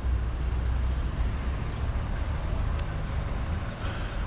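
Street traffic on a city road: a steady low rumble of car and truck engines and road noise.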